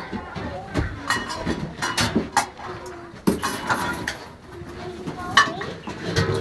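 Play-kitchen crockery clinking and knocking as a small child handles it, in a string of sharp knocks spread through the few seconds. Children's voices murmur around it.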